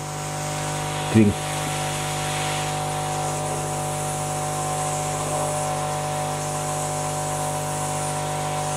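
Hot air soldering station blowing steadily at 340 °C on mild airflow, a constant hum with airflow hiss, as its nozzle heats an LGA775 CPU socket pin to melt the solder and free the pin.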